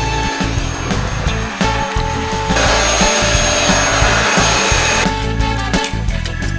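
Vacuum cleaner running for about two and a half seconds in the middle, a dense rushing noise with a steady high whine, over background music with a steady beat.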